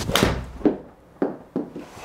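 Indoor golf shot with an 8-iron off a hitting mat: a sharp crack of the club striking the ball just after the start. Three duller thuds follow over the next second and a half, the first and loudest about half a second after the strike.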